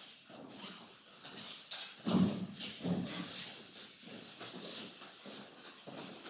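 Room noise of people moving in a lecture hall: shuffling, scattered footsteps and knocks, with the loudest stir about two to three seconds in.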